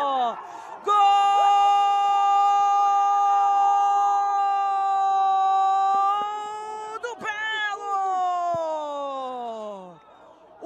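A football commentator's drawn-out goal cry: a shouted note held at one pitch for about six seconds, then a second shout that slides down in pitch.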